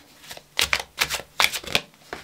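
Tarot deck being shuffled by hand: a quick run of irregular sharp card snaps and flutters, about seven in two seconds.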